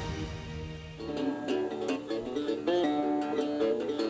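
A resonator guitar played by hand, separate plucked notes and chords ringing out, starting about a second in after the fading end of a short intro jingle.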